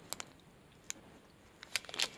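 A small plastic zip bag being handled in the fingers, giving a few faint, short crinkles: a couple at the start, one about a second in, and a few close together near the end.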